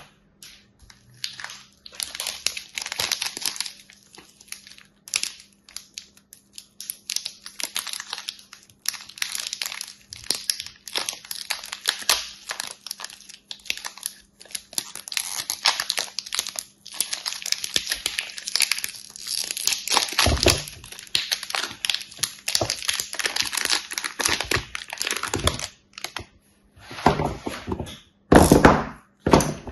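Clear plastic film wrapper on a multipack of soap bars crinkling and tearing as it is peeled off by hand, in dense crackly bursts with short pauses. A couple of dull knocks in the second half.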